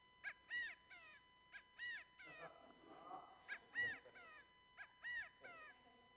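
Recording of a California quail giving its three-note 'chi-ca-go' call about four times, played back faintly.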